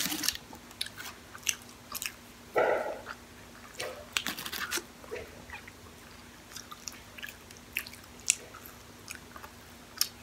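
Close-miked chewing and biting of fast-food french fries, with many short, sharp mouth clicks scattered irregularly. One louder, muffled sound comes about two and a half seconds in.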